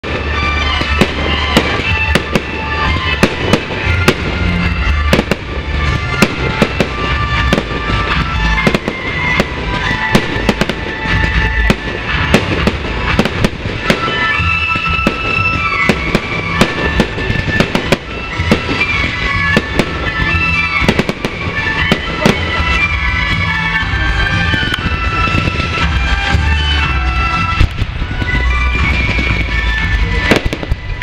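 Fireworks display: aerial shells bursting in quick succession, many sharp bangs throughout, with music playing alongside.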